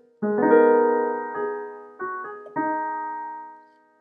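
Piano playing a G-sharp minor add 9 chord: the chord is struck just after the start and left to ring, with a few more notes added between one and three seconds in, then dies away near the end.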